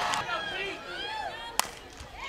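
Faint crowd voices, then about one and a half seconds in a single sharp crack of an aluminium softball bat hitting the ball on a chopped ground ball.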